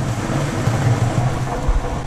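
Small cement mixer running steadily, its drum turning and tumbling a stiff five-to-one sand and cement mortar mix, a continuous low hum with churning noise.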